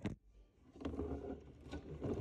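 Handling noise on a phone's microphone: a knock as the phone is set down, then muffled rustling with a few faint clicks.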